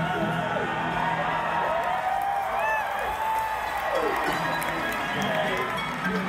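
Live bluegrass band playing between sung verses, with fiddle and acoustic guitar, over an arena crowd cheering.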